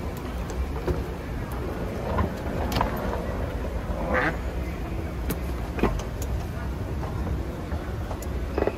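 Busy airport terminal hall ambience: a steady low rumble under scattered distant voices and occasional short clicks, with one voice-like call standing out about four seconds in.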